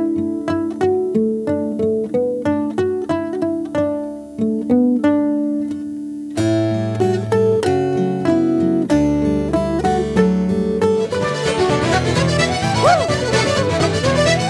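Solo acoustic guitar played fingerstyle: plucked melody notes ringing over bass notes, turning denser about halfway through. Near the end it gives way to an Irish traditional band led by fiddle.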